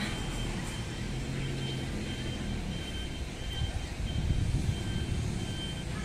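Urban outdoor background: a low, steady rumble of traffic, with a faint, high, short beep repeating through most of it.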